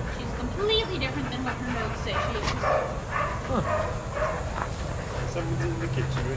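Several dogs barking and yipping in many short bursts.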